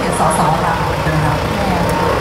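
Diesel engine of a Volvo fire truck running at idle, a steady low rumble beneath a man's voice over a loudspeaker.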